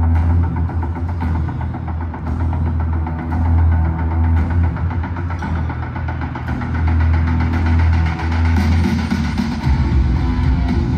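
A live stadium sound system playing a deep, throbbing low drone that swells and fades in slow waves, the ominous intro of a heavy metal song. Right at the end heavy distorted guitar comes in.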